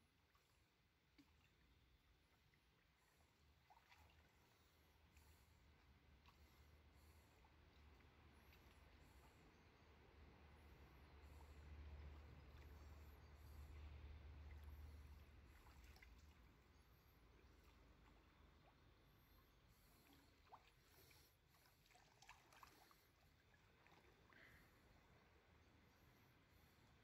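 Near silence: faint stream water, with a low rumble that swells and fades in the middle and a few faint light clicks near the end.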